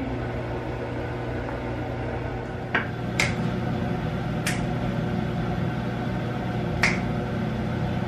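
A steady low room hum with four short, sharp snaps or clicks at irregular spacing through the middle of the stretch.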